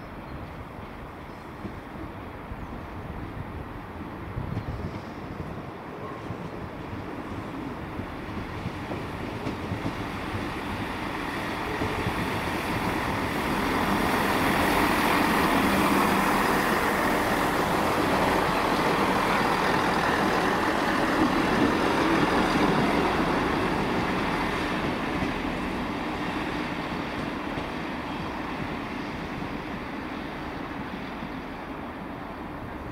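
East Midlands Railway Class 158 diesel multiple unit passing by: the engine and the wheels on the rails build up to a peak about halfway through, then slowly fade as the train draws away.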